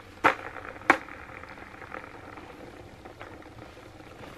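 Two sharp knocks about half a second apart, then a steady whirring from a newly fitted skateboard wheel spinning freely on Bones Reds bearings, slowly fading.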